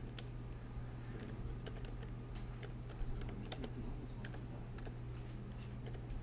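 Computer keyboard being typed on: a run of faint, irregular keystrokes as a word is entered, over a steady low hum.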